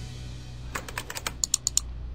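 Keyboard-typing sound effect: a quick run of about ten clicks in the second half, over faint background music.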